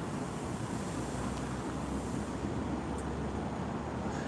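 Steady city street ambience: road traffic heard as an even low rumble and hiss, with no distinct events.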